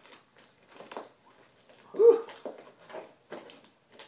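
A knife cutting through packing tape on a cardboard shipping box, in a run of short scratching strokes. About two seconds in there is one louder, brief, slightly pitched scrape or squeak.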